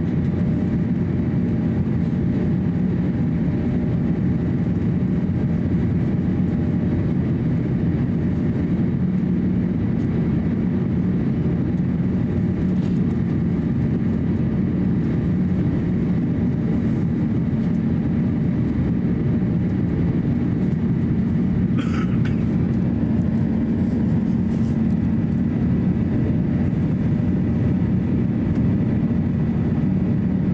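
Airbus A350-900 cabin noise in flight: the steady deep roar of airflow and the Rolls-Royce Trent XWB engines heard from a window seat by the wing, with faint steady hums. A short high-pitched sound comes about two-thirds of the way through.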